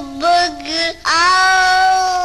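A snippet of a pop record spliced in as a break-in 'answer': a high voice sings several short notes, then holds one long note from about a second in.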